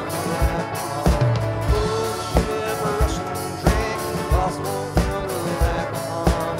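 Folk-rock band playing live: a drum kit with a steady kick-drum beat about every two-thirds of a second, under instruments and a singing voice.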